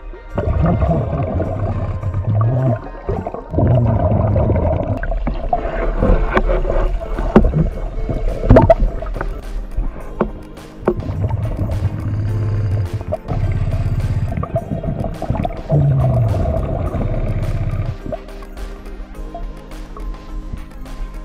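Background music under a diver's breathing heard underwater: repeated bubbling exhalations through the regulator, each a second or two long, with a few sharp clicks near the middle.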